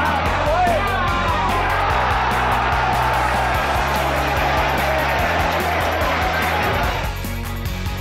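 Rock-style background music with stadium crowd sound over it: shouting and cheering around a goal. The crowd sound cuts out about seven seconds in, leaving the music alone.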